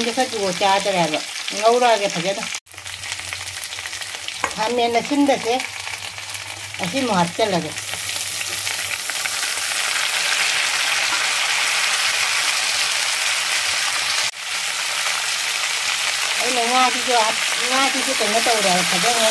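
Potatoes and vegetables frying in hot oil in a wok, sizzling while a metal spatula stirs them. The sizzle grows louder and brighter about halfway through, as chopped tomatoes are added, and there are two brief dropouts.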